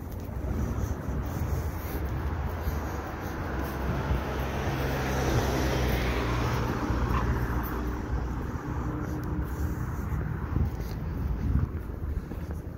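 Street traffic: a motor vehicle's engine and tyres swelling as it passes, loudest around the middle, then fading, over a steady low rumble.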